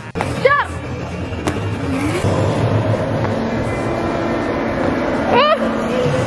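A steady rumbling, hissing noise with a faint hum runs through, broken by a short high vocal whoop about half a second in, a single click, and another rising whoop near the end.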